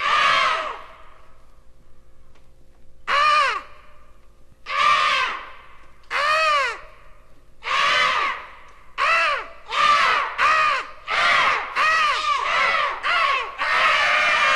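Crow cawing, about a dozen arched calls, spaced a few seconds apart at first and then coming faster and faster toward the end, played from a vinyl record with a faint steady hum underneath.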